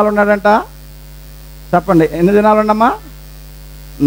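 Steady electrical mains hum from the sound system, heard plainly in the pauses between two short spoken phrases from a man.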